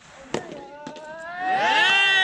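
A soft tennis ball struck sharply by a racket, then loud rising shouts from the players as the point is won, swelling over the last half second and cutting off suddenly.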